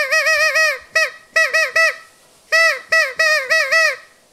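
A small green handheld horn blown by mouth, sounding a honking note in rapid short toots. The toots come in three quick bursts, with a short pause just past halfway, and each toot drops in pitch as it ends.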